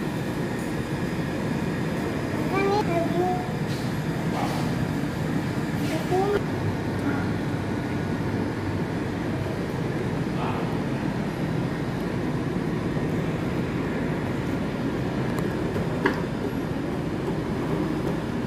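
Steady low background rumble, with a few brief high vocal sounds from young children at the table.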